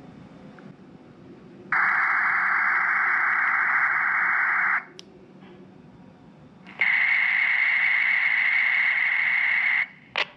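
Two bursts of a Ribbit/Rattlegram digital text-message signal, each a steady hiss-like data tone about three seconds long, with a pause of about two seconds between them. The first is played by the phone's speaker into the Baofeng handheld to send the message. The second comes out of the Baofeng's speaker as the other station repeats the message back.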